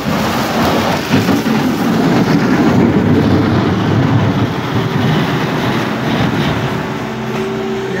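Hyundai skid-steer loader's diesel engine running under load, a steady rumble, as its bucket works through packed snow, ice and rubble on the road.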